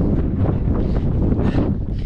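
Wind buffeting the microphone: a steady, heavy low rumble.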